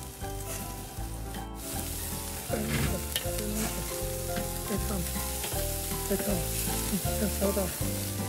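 Pork and chicken skewers sizzling steadily over the fire on a kettle grill, with tongs turning the meat.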